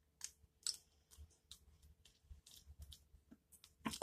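Faint, scattered little mouth clicks and lip smacks from tasting oil drops held under the tongue, about a dozen at irregular intervals.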